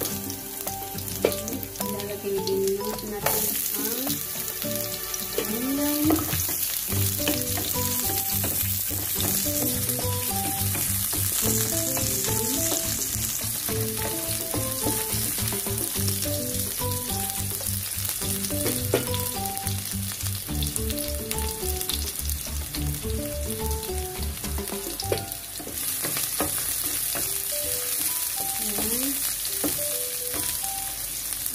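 Garlic and sliced onion frying in olive oil in a frying pan, stirred with a wooden spoon: a steady sizzle that grows louder a few seconds in.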